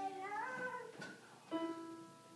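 Single notes on a portable electronic keyboard played slowly and haltingly by a beginner child: one note held at the start, then another struck about one and a half seconds in that fades away.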